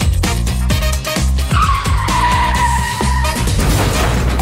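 A tyre-screech sound effect, a vehicle skidding to a stop, over dance music with a steady beat. The screech starts about one and a half seconds in, dips a little in pitch and lasts about two seconds.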